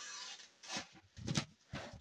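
Folding knife's 154CM blade slicing through a sheet of printed paper, a soft hiss of the cut in the first half second, then two short rustles of the paper. The edge is the factory edge and it slices the paper cleanly.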